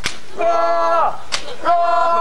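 A long jump rope slapping the pavement twice, a bit over a second apart. Between the slaps a group calls out the count of consecutive jumps in unison, one long call per jump.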